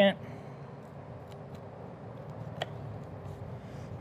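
A boning knife cutting raw chicken wings apart at the joint on a wooden cutting board: a few faint, sharp clicks of the blade on the board, the clearest about two and a half seconds in, over a steady low background hum.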